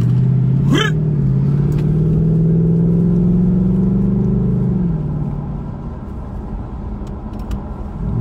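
Car engine and road noise heard from inside the cabin, a low hum rising slowly in pitch as the car accelerates, then dropping away just under five seconds in as it eases off.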